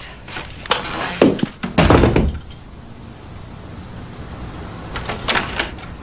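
A door closing with a dull thump about two seconds in, with a few lighter knocks and clicks before it and again near the end.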